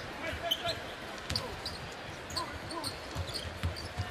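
Basketball being dribbled on a hardwood court, with short thuds and clicks over a steady murmur from the arena crowd.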